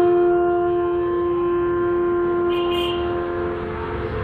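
Bansuri (large bamboo transverse flute) holding one long, steady low note in raga Jaijaiwanti, fading away near the end.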